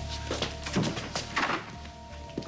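Background music with steady held tones, and two dull thuds close together near the middle.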